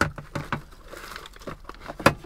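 Snap-on plastic lid being pried off a glass food storage container: a run of crinkly plastic clicks and snaps.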